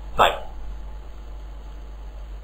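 A man's voice says one short word, then only a steady low background hum from the recording.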